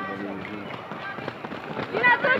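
A spectator's shout trails off, then the quick, irregular footfalls of a pack of runners go by close on the synthetic track.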